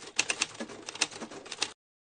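Typewriter keystroke sound effect: a quick, irregular run of mechanical key clacks, cutting off suddenly near the end.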